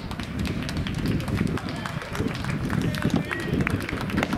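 Indistinct voices of people talking, over a low rumble and many scattered sharp clicks.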